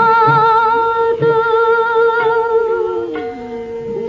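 Bengali devotional song: a high voice holding long notes with vibrato over instrumental accompaniment, with a lower held note entering about three seconds in.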